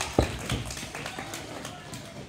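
Children's feet thudding and tapping on a stage as a group scrambles up onto it, with one loud thump just after the start and scattered lighter steps after.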